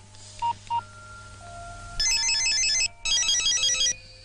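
Two short mobile-phone keypad beeps, then an electronic mobile-phone ringtone of rapidly alternating high tones, ringing in two bursts of just under a second each, with the second stopping near the end.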